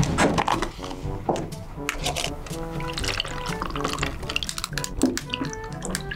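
Light background music with short plucked notes, over a drink being poured from a large plastic cup into smaller plastic cups of ice, with many small clicks.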